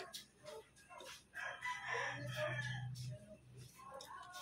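A drawn-out animal call starting about a second and a half in and lasting around two seconds, with a low hum beneath its second half.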